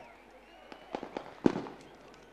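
A quick string of about five sharp cracks, the loudest about one and a half seconds in and followed by a short echo.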